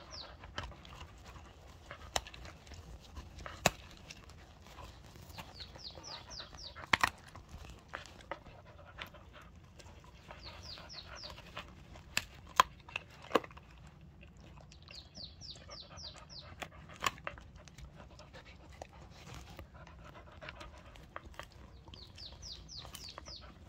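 A dog chewing a hand-held treat, with sharp clicks of its teeth on the treat now and then. A bird sings a short run of quick high notes every four to five seconds.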